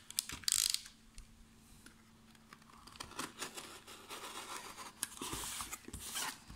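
Cardboard parcel wrapped in packing tape being handled and shifted on a hard tabletop: scraping and rubbing of cardboard and tape, with two louder, hissy scrapes about half a second in and near the end.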